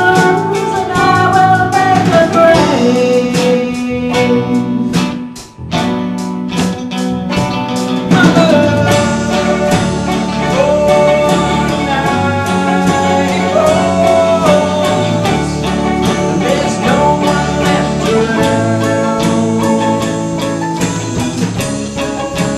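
Live band playing an instrumental passage with electric guitars over a steady drum beat and a melody line on top. The band drops out briefly about five and a half seconds in, then comes back in.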